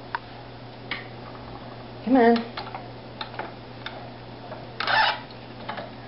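Wooden flyer spinning wheel turning while yarn is plied, with a steady low hum and light, irregular clicks and taps from the wheel and flyer.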